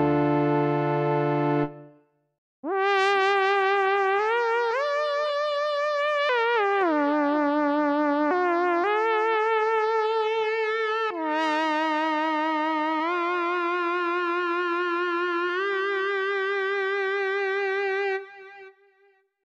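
MOK MiniRaze software synthesizer being played. A held chord ends about two seconds in. After a brief gap comes a single-note lead melody on its Soft Lead preset, with vibrato and smooth glides from note to note.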